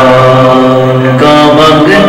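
Unaccompanied male voice chanting a naat in long, held notes, moving to a new note a little over a second in.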